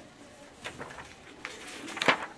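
Paper pages of a picture book being turned by hand, a few soft rustles about two thirds of a second and a second and a half in, with a sharper page flip at the end.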